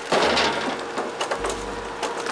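A small wire hand trolley rattling and clicking as it is pulled along a paved road, its little wheels clattering over the surface. The rattle is loudest in the first half-second, then goes on as a run of small clicks.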